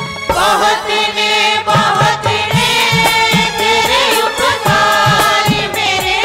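A man and a woman singing a devotional worship song together into microphones, over a steady drum beat of about two strokes a second.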